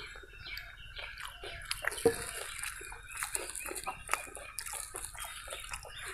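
Sambar poured in a thin stream from a small clay pot onto food on a banana leaf, then fingers mashing and mixing the soaked food, with many small wet clicks and squelches and a louder knock about two seconds in.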